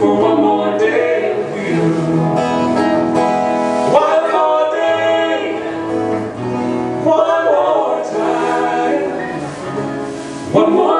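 Live acoustic song: voices singing over two strummed acoustic guitars, with held, changing notes throughout.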